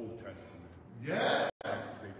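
A preacher's voice: quieter speech, then a loud vocal exclamation rising in pitch about a second in, broken off by a split-second dropout in the audio.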